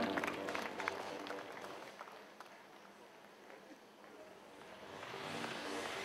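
Audience applause that dies away over the first couple of seconds, leaving the hall fairly quiet. Music swells back in near the end.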